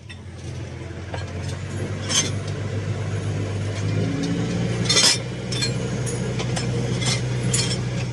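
New Holland T7040 tractor's six-cylinder diesel running steadily, heard from inside the cab while it drives out the umbilical slurry hose off the reel; the engine note rises a little about halfway through. A couple of sharp clinks, about two and five seconds in.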